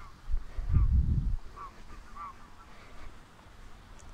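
A few faint, short honks of geese, with a louder low rumble about a second in.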